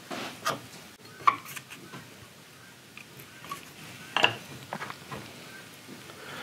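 Small palm chisel paring wood from a rifle stock's trigger-guard inlet: a few short, scattered scraping cuts and light clicks, with the sharpest click about four seconds in as the inlet and parts are handled for a test fit.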